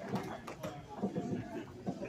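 Indistinct voices of people talking in a large hall, with a few faint knocks.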